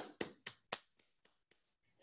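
One man clapping his hands, about four claps a second, loud at first and fading to a few faint claps within a second and a half.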